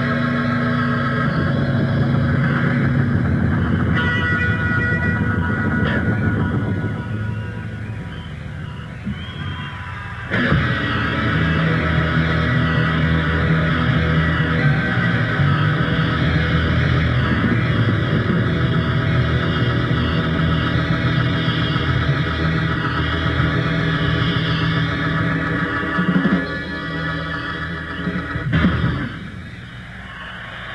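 Live rock band led by electric guitar playing the closing stretch of a song. The band drops back for a few seconds, comes back in loud about ten seconds in, and the song ends with two loud hits near the end.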